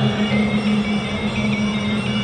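Traditional Kun Khmer ring music: a sralai (Khmer oboe) playing a steady held tone that barely moves in pitch.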